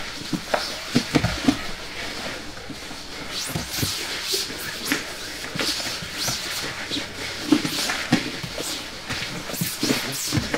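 Scuffling, scraping and soft thumps of two grapplers moving on training mats, heard as the playback sound of a recorded sparring roll.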